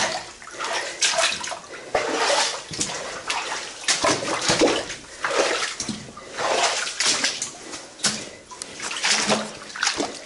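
People wading through shallow water, each step splashing and sloshing in a steady walking rhythm.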